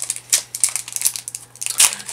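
Foil Pokémon booster pack wrapper crinkling and tearing as it is pulled open by hand: a quick, irregular run of sharp crackles, loudest near the end.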